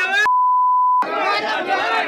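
A steady, high censor bleep, under a second long, cuts out the shouting of a crowd in a brawl; the shouting voices run on either side of it.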